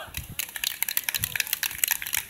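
Sparse applause from a small audience, with separate claps heard one by one at an irregular pace.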